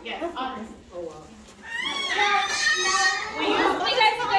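Children's voices chattering and calling out in a group, growing louder from about two seconds in with a rising high-pitched call.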